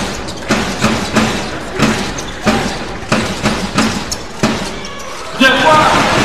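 A basketball being dribbled on a hardwood arena floor, one bounce about every two-thirds of a second, over the murmur of the crowd. Near the end the crowd noise grows louder.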